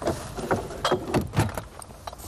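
A car's rear hatch and boot being handled: several short knocks and rattles as the parcel shelf is lifted, with keys jangling.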